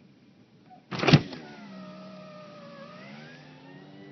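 A sharp clunk about a second in, then an electric car window motor whining steadily, its pitch sagging slightly and then rising near the end.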